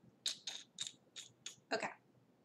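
A makeup brush worked in an eyeshadow pan: five quick scratchy strokes, then a louder scrape or knock near the end.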